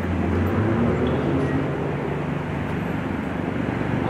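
Steady low hum of idling vehicle engines, heaviest in the first second, over street traffic noise.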